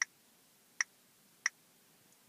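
Three short, sharp key-press clicks from a Samsung phone's keypad, about two-thirds of a second apart, as the Bluetooth pairing code is typed in on the handset.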